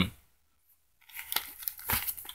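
Paper rustling as book pages are handled and turned, starting about a second in after a silent pause, with a few light clicks among the rustles.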